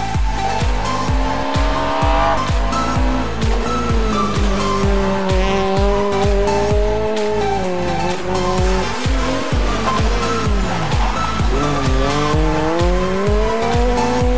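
Peugeot 208 rally car's engine revving hard on a stage, its pitch climbing, dropping at gear changes and climbing again several times. Dance music with a steady beat plays under it throughout.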